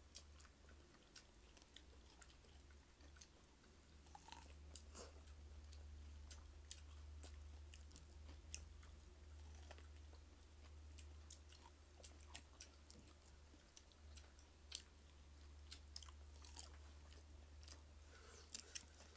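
A person chewing fried fish and rice eaten by hand: soft close-up mouth clicks and smacks, scattered irregularly, over a steady low hum.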